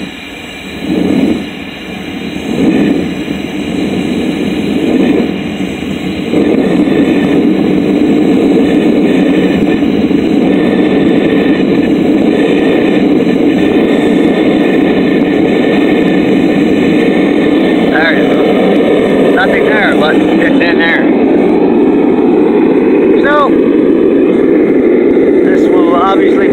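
Propane burner of a Devil Forge melting furnace running, a loud steady rush that the owner likens to a jet engine. It swells unevenly for the first few seconds, then holds steady from about six seconds in.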